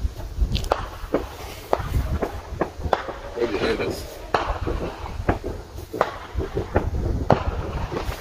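Distant fireworks going off in an irregular string of sharp pops and bangs, a couple of reports a second, with voices faintly in the background.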